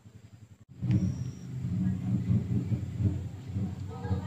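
A low engine rumble of a motor vehicle running nearby, cutting in suddenly about a second in.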